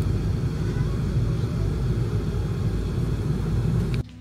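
Steady low road and engine rumble inside the cabin of a moving car, cutting off abruptly near the end.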